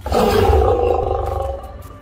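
A male lion's loud roar, heard from inside the house through the window glass: one call that starts suddenly, peaks about half a second in and fades over about a second and a half.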